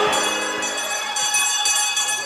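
Small bells jingling in irregular shakes, their high ringing tones hanging on between them.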